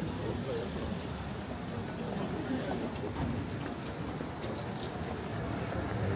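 City street ambience on a wet night: a steady mix of traffic on the damp road and passers-by talking in the background, with no single sound standing out.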